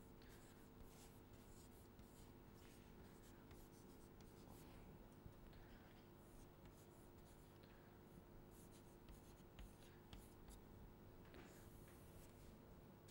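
Faint chalk scratching and tapping on a chalkboard as words are written, in short irregular strokes, over a low steady hum.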